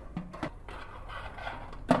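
Wire mesh basket and rack being slid onto the metal rails of a countertop air fryer oven: a few quiet metal clicks and scrapes.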